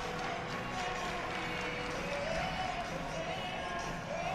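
Background music playing in a gymnastics arena over a low crowd murmur; a few held notes glide slowly in pitch, and there are no distinct thuds.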